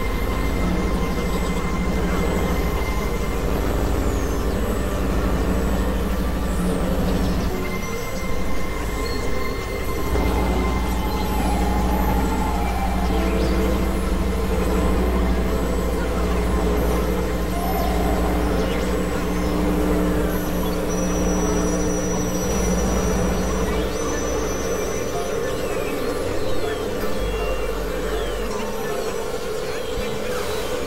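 Experimental electronic drone music: several sustained synthesizer tones layered over a heavy low drone and a noisy wash, the low drone dropping away briefly about eight seconds in before returning.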